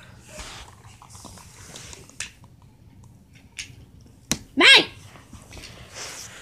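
Faint rustling and a few sharp clicks from small toys being handled, then one short, loud, high-pitched yelp a little past the middle, just after the loudest click.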